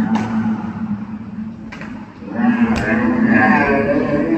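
A low, drawn-out, moo-like tone fades out early, then returns and holds for over a second around the middle. Three sharp echoing knocks of a basketball bouncing on the hardwood gym floor fall about a second apart.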